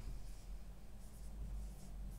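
Felt-tip whiteboard marker writing letters on a whiteboard: a series of faint, short squeaky strokes over a low steady hum.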